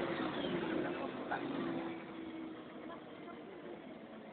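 Iveco Eurorider city bus's engine and Voith automatic gearbox running under way, heard from inside the bus: a steady drone that eases down about two seconds in.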